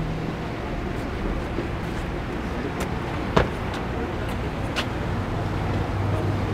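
Steady outdoor rumble and hiss with a few light clicks, and one sharper click or tap about three and a half seconds in.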